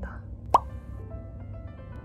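A single short pop that rises in pitch about half a second in, the loudest sound here, followed by soft background music with a few held notes.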